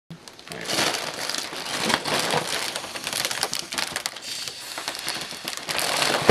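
Foil (Mylar) helium balloon crinkling as it is squeezed and handled at the mouth, a dense run of small crackles.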